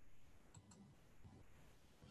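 Near silence: room tone, with two faint clicks a little after half a second in.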